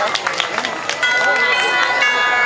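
Parade crowd talking, with scattered sharp clicks; about a second in, parade music with sustained notes comes in.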